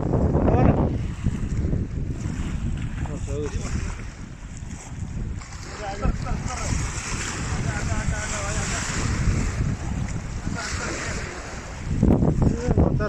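Wind buffeting the microphone over small waves lapping and breaking against a rocky shoreline.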